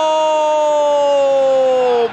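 A male football commentator's long held shout, one loud sustained note that slides slightly down in pitch near the end. It is his reaction to a shot that narrowly misses the goal.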